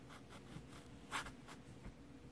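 Faint rustling and scratching from a small dog wriggling in a person's arms, with one louder brief scrape a little after a second in.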